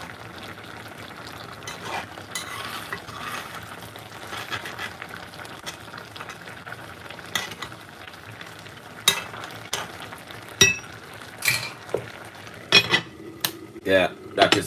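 A metal spoon stirring in an aluminium pot of simmering brown stew, over a steady sizzle from the sauce. In the second half come several sharp metal clinks and knocks, one ringing briefly, as the spoon taps the pot and the aluminium lid is set on.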